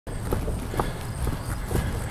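Footsteps, about two a second, each a short knock, over a steady low rumble.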